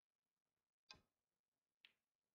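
Two faint snooker clicks: the cue tip striking the cue ball about a second in, then the cue ball hitting a red just under a second later.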